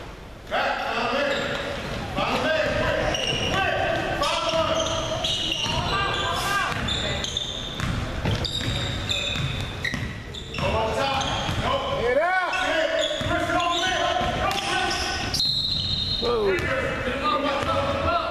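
Basketball game sounds in an echoing gym: the ball dribbling on the hardwood, sneakers squeaking in short chirps, and players calling out. A brief high whistle sounds near the end.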